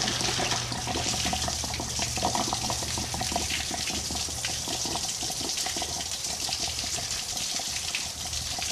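Water gushing in a steady stream out of an RV water heater's open drain-plug hole, pouring and splashing over the access door onto the ground as the tank drains.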